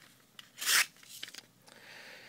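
Spyderco Chaparral folding knife's CPM-S30V blade slicing composition paper. There is one short cut about two-thirds of a second in, with faint paper-handling ticks around it. The factory edge is still sharp enough to glide through the paper with no pressure.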